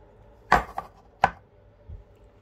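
A clear container knocked down onto a wooden tabletop: two sharp knocks about 0.7 s apart, a lighter tap just after the first and a faint one near the end.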